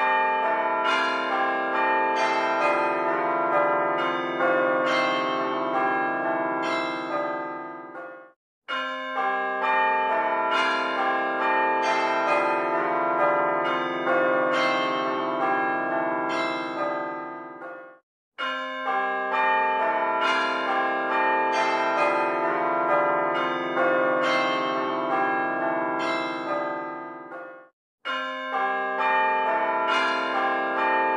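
Bells ringing in a quick pealing pattern. Each run lasts about nine seconds, stops dead for a moment, then starts over, three times in all, as a looped soundtrack does.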